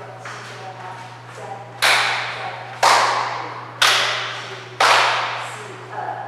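Four loud, sharp thumps, evenly spaced about one a second, each ringing out and fading before the next, keeping time for a counted dance step.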